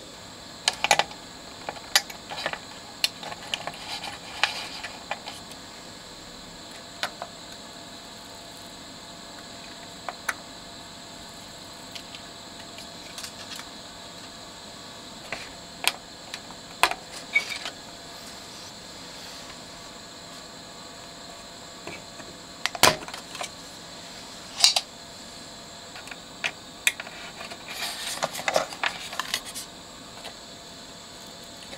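Scattered small clicks and taps of hands and tools handling a replacement electrolytic capacitor and soldering it into a circuit board, with a few louder knocks near the end, over a faint steady hiss.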